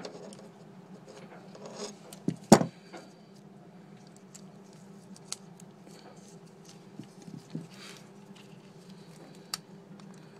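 Small metal clinks and taps of hand tools and a valve spring compressor working against an Atomic 4 marine engine's valve gear, with one loud knock about two and a half seconds in and a few sharp ticks later, over a steady low hum.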